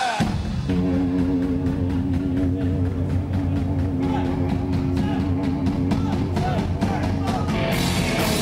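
Live rock band playing the opening of a song: a steady drum-kit beat under held notes, the band getting louder and brighter with cymbals near the end.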